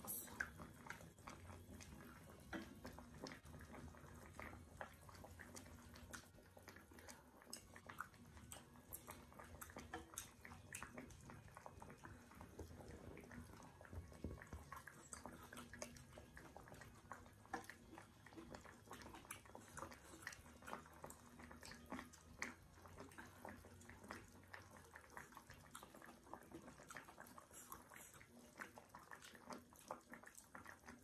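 Faint, close eating sounds: chewing and slurping of hotpot, with frequent small wet clicks and smacks, over a low hum that stops near the end.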